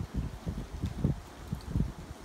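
Wind buffeting the phone's microphone in irregular low rumbling gusts, several a second.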